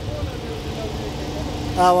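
Steady low rumble with a faint steady hum that comes in about a second in, with no clear source; a man starts speaking near the end.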